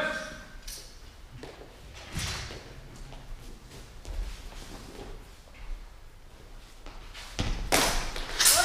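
Scattered knocks and thuds of a longsword fencing bout in a large hall: blades striking and feet on the gym floor. The loudest, sharpest impact comes near the end.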